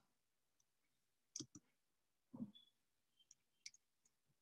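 Near silence broken by a few faint clicks, spaced irregularly through the middle and later part: computer mouse clicks while the presentation slides are being changed.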